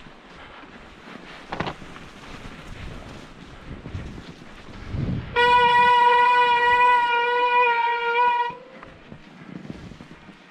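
Disc brake on a Specialized Turbo Levo e-mountain bike squealing under braking: one steady, high-pitched squeal about five seconds in, lasting about three seconds and wavering slightly near the end. Wind noise on the microphone underneath.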